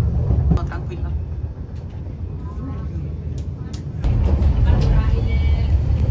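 Italo high-speed train running, heard from inside the passenger carriage as a steady low rumble that steps up suddenly about four seconds in, with faint voices in the background.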